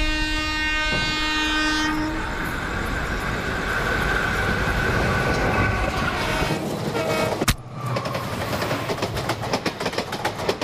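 Train horn sounding for about two seconds, then the rumble of a passing train. A sharp click comes about seven and a half seconds in, followed by a rapid clatter.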